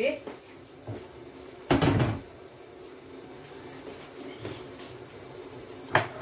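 A brief clunk about two seconds in, like a cupboard door or a container being shut or set down, with a short click at the start, over a steady faint kitchen hum.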